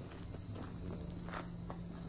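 Footsteps of a person walking on a path at night: a few faint, irregular scuffs. Behind them is a steady high insect trill.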